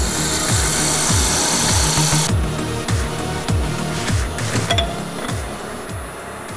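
Sandpaper held against a wooden spindle turning on a wood lathe: a steady, high hiss for about two seconds, then a shorter burst of rubbing about halfway through. Electronic background music with repeated falling bass notes plays under it.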